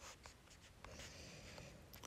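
Near silence: faint room tone with a few soft clicks and a light rustle.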